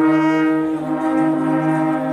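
Several alphorns playing together, holding long steady notes at different pitches at once.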